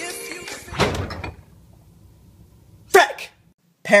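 Music ends abruptly with a single thump about a second in, followed by a faint low hum. Near the end comes a short burst of voice.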